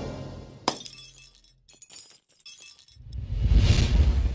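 Sound-effect glass shattering: a sharp crash a little under a second in, then scattered tinkling pieces. A deep rumbling swell builds up loudly near the end.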